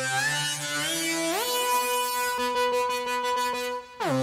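A driven synth lead played in Bitwig Studio through a static EQ boost set on C3's fundamental. It sustains a low note, then slides up in two steps to a note about an octave higher and holds it. The higher note lacks the boosted low end, because the EQ boost does not track the key.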